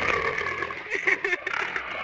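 Guttural, raspy creature growl, throaty and uneven in loudness.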